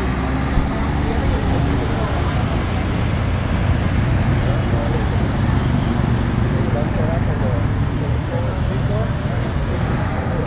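Street traffic: cars driving past close by with a steady low rumble, and indistinct voices in the background.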